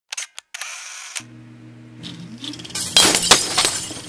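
Sound effects under a channel's intro logo: a few sharp clicks, a short hiss, then a low steady hum with a rising tone. About three seconds in comes a loud cluster of crashing, clattering hits that fades out.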